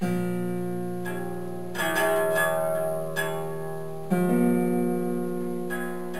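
Acoustic guitar played in slow, improvised chords, each struck and left to ring: about six chords in all, a new one every second or so.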